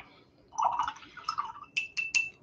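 Paintbrush swished in a cup of rinse water, then tapped against the cup's rim three times near the end, each tap a light clink with a brief ring. The brush is being cleaned between colours.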